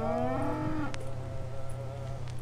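Cattle mooing, several calls overlapping, one long moo rising in pitch over the first second.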